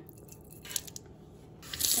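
A faint trickle and a few small clicks as a splash of liquid cleaner is poured from a plastic bottle into a glass bowl in a stainless steel sink. Near the end the kitchen tap comes on and water starts running steadily into the bowl.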